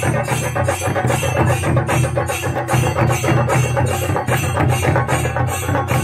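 A chenda drum ensemble beaten with sticks in a fast, dense rolling rhythm, with ilathalam bronze hand cymbals clashing on a steady beat of about two to three strokes a second.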